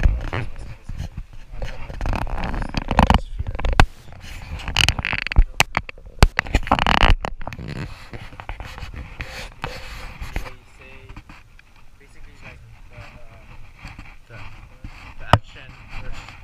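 Indistinct talking with scattered knocks and rustling, busier in the first half and quieter after about ten seconds.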